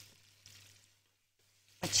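Near silence between a woman's words, with only a faint low hum and a soft brief noise about half a second in. The frying heard around it does not come through here.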